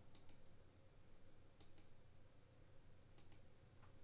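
Faint computer mouse clicks in quick pairs, three pairs about a second and a half apart and a single click near the end, over a faint steady hum.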